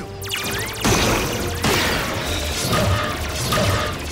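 Cartoon battle sound effects over music: a quick run of clicks, then loud crashes about one second and about a second and a half in, followed by held musical tones.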